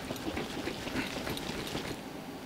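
Handling noises of a jar of muddy soil-and-water: scattered small clicks, taps and rubs as it is wiped with a paper towel and its lid is worked on.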